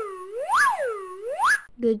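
Electronic swooping sound effect in an animated intro: one pitched tone slides down and back up twice in a row, with a thin high hiss above it.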